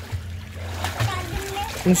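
Light water splashing and sloshing in a small inflatable backyard pool as a child moves about in the water, with faint voices over it.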